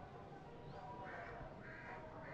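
Faint bird calls: a few short, harsh calls repeated about half a second apart, over low background noise.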